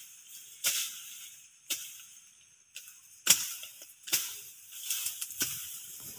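A machete chopping through grass and brush: a series of sharp, irregular cuts roughly a second apart, the loudest a little past the middle, over a faint steady hiss.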